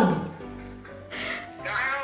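Background music with steady held notes under a video-call conversation; a little after a second in, a brief high-pitched cry rises over it.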